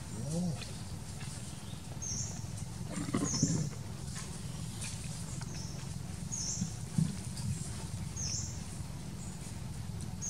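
Monkeys calling: three short pitched calls, near the start, about three seconds in (the loudest) and about seven seconds in, over a faint high chirp that repeats about every second and a half.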